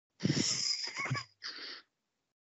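A breathy hiss through a participant's microphone on an online call, lasting about a second and a half, with a faint voice in its middle.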